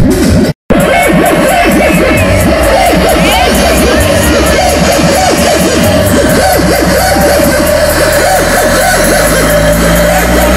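Very loud electronic dance music from a DJ set played over a large PA system, with a fast, even beat and a warbling synth line; the sound cuts out completely for a moment about half a second in.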